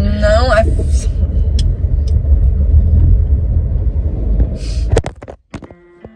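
Steady low rumble of a car driving, heard inside its cabin, with a short voice at the very start. About five seconds in there is a rustle and a few clicks of handling noise, then the rumble cuts off and faint guitar music begins.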